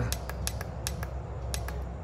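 Several sharp clicks a fraction of a second apart: buttons being pressed on a FNIRSI SWM-10 handheld battery spot welder to raise its weld pulse setting.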